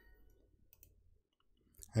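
Faint computer mouse clicks, after a short chime that rings out and fades within about half a second at the start as the answer is marked correct.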